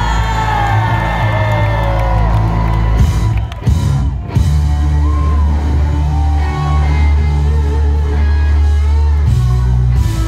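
Live rock band playing loud: electric guitar with sliding, bending notes over drums. About four seconds in the sound briefly drops out, then the full band comes back in heavy.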